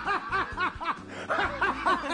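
People laughing: a quick run of short, repeated laughing syllables that breaks off about a second in and then starts again.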